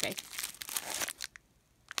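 Clear plastic wrapping crinkling and rustling as a bracelet in its plastic bag is pulled out of a satin drawstring pouch. The crinkling stops a little over a second in.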